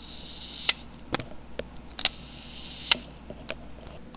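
Two short hissing bursts, each ending in a loud sharp click, about two seconds apart, with fainter clicks in between.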